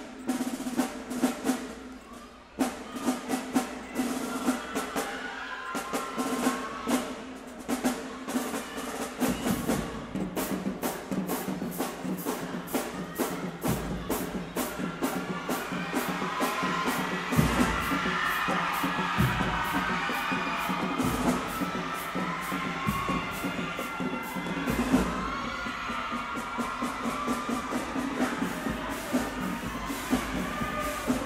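High school marching band playing: the drumline beats a fast snare-and-bass-drum cadence, and partway through the brass comes in with a loud melody over the drums.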